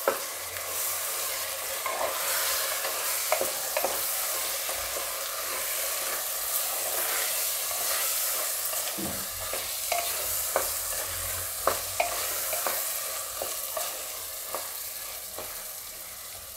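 Rice and vegetables sizzling as they fry in a pressure-cooker pot while a spatula stirs them, with short scrapes and taps of the spatula against the pot. The sizzle eases slightly near the end.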